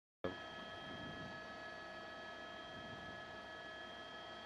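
Faint steady electronic hiss and hum carrying several thin, unchanging high tones. It starts with a click just after the beginning.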